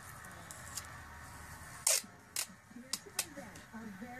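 Four sharp clicks in the second half, the first the loudest, from handling scissors and a roll of tape while cutting a strip of tape.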